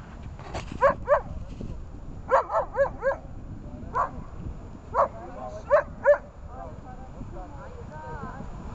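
Dog barking: about ten short, sharp barks in clusters. There are two near the start, a quick run of four around two to three seconds in, then single barks, with a last pair near six seconds.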